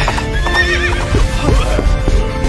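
Horse sound effects over background music: a wavering whinny about half a second in, then galloping hoofbeats.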